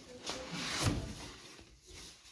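Cardboard box flaps being pulled open by hand, a dry rustling scrape of cardboard that builds to its loudest just under a second in and then fades.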